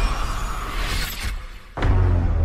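Movie-trailer sound design: a loud shattering crash over music, fading out, then a sudden deep bass hit near the end.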